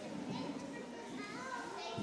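Quiet, indistinct chatter of young children's voices.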